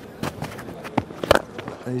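Leather cricket ball struck by a bat with one sharp crack about a second and a half in: a clean hit that goes for six. It is preceded by a few lighter knocks from the bowler's run-up footsteps.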